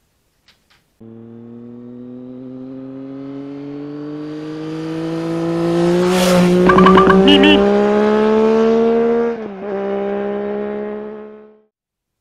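Intro sound effect of an engine revving up: one steady note climbs slowly in pitch and grows louder over several seconds. Short high chirps and a squeal come around the middle, and the note dips once before fading out near the end.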